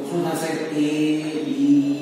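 A man chanting in long held notes, the pitch stepping from one note to the next.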